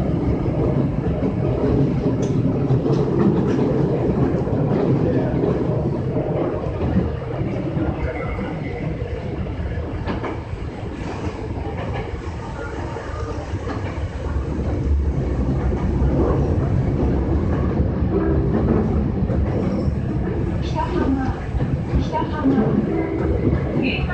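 5300-series train running through a subway tunnel, heard from inside the car: a steady, loud rumble of wheels on rail. It eases a little partway through and builds again later.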